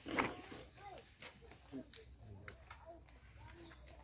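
Faint background voices murmuring, with a few light clicks scattered through.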